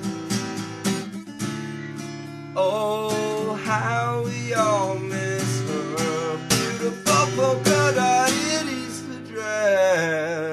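Acoustic guitar strummed as a song's accompaniment. A man's voice comes in singing over it about two and a half seconds in, with a wavering held note near the end.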